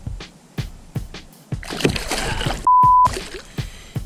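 Water splashing as a hooked bowfin thrashes at the side of the kayak, then, just before three seconds in, a short steady beep, louder than anything else, that bleeps out a word.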